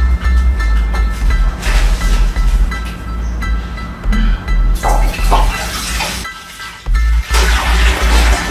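Background music with a heavy, repeating bass beat and steady held tones, with a few short rushes of noise coming and going.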